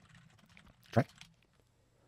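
Near silence: a few faint computer-keyboard clicks at the start, then a man saying one short word ("Right") about a second in.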